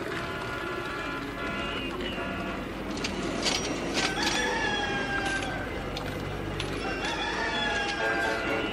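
A rooster crowing, one long call about four seconds in and another starting near the end, over the opening of a song.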